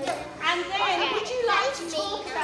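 A class of young girls talking and calling out over one another, several high voices overlapping.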